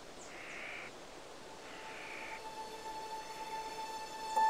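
Two faint, raspy bird calls about a second apart, then a soft held music note that begins about halfway through and swells slightly.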